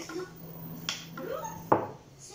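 Kitchen knocks as egg whites are poured from a ceramic mug into a mixer bowl: a soft click about a second in and a sharp knock near the end, over a low steady hum.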